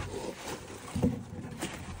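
Rustling and scraping of loose open-cell spray foam chunks and clothing as a worker crawls and gathers them, with a few brief louder scuffs about a second in.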